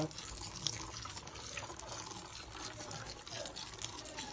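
Water pouring in a steady thin stream onto moist soil substrate in a glass vivarium: a heavy soaking of the bioactive soil until water pools on the surface.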